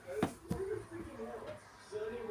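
Indistinct background speech, with two short sharp knocks about a quarter and half a second in.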